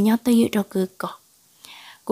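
Speech only: a voice narrating a story in Hmong, breaking off about a second in for a brief pause.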